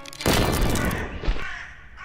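A crow cawing, over a sudden loud burst of noise about a quarter second in that dies away over the next second and a half.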